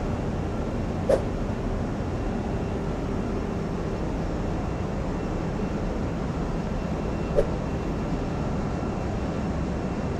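Steady running noise of a tanker's engine-room machinery, with two brief sharp knocks about six seconds apart.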